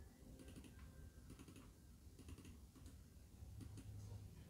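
Faint typing on a computer keyboard: light clicks in quick, irregular runs over a low steady hum.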